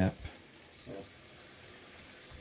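A tap running faintly into a bathroom sink, heard as a low steady hiss after a last spoken word, with a brief faint sound about a second in.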